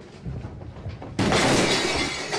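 A sudden loud crash of things collapsing and breaking about a second in, with shattering that trails off over a second or so.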